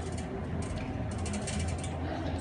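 Metal airport luggage trolley rolling and rattling as it is pushed, with runs of rapid clicks from its frame and castor wheels.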